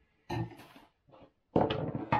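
Kitchen handling noises: a short knock and rustle about a third of a second in, then a louder run of clatter near the end as a wooden cutting board and a glass jam jar are set about on the counter among plastic-wrapped food.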